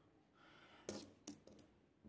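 Old silver coins clinking faintly against each other as they are gathered up by hand: about three sharp clicks starting about a second in, one with a short high ring.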